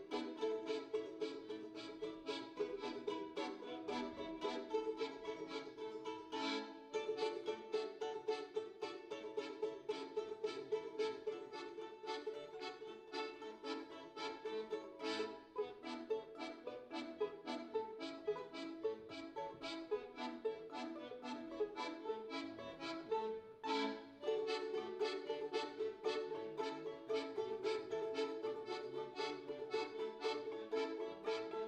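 Two balalaikas and a piano accordion playing a tune together, the balalaikas strummed in quick strokes over the accordion. The music breaks off very briefly about seven seconds in and again near 24 seconds.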